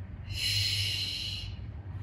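A woman's forceful breath out through the mouth, a single hiss lasting just over a second, taken as a Pilates exhale on the effort of the exercise.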